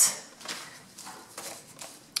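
Faint rustling and light taps of a kraft paper envelope being picked up and handled on a tabletop, with a brief louder rustle right at the start.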